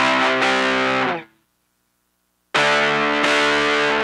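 Distorted electric guitar in drop D tuning playing palm-rhythm power chords (C5 shapes): two short bursts of chords, each about a second and a half long, with about a second and a half of silence between them.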